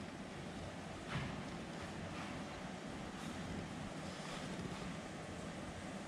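Steady low background noise of the shop and car cabin, with a few faint taps of laptop keys.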